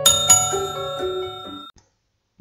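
Short music jingle ending on a bright, bell-like chime struck at the very start. Its ringing tones fade away over about a second and a half.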